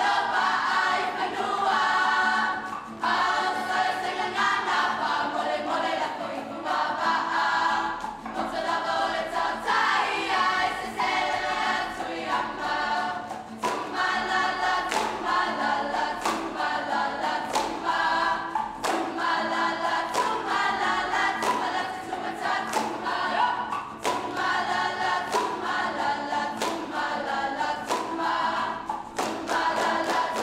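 Group choir singing a Samoan siva song with guitar accompaniment, with sharp hand claps keeping time through the song.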